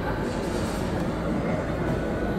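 Steady low rumbling background noise, even throughout with no distinct events.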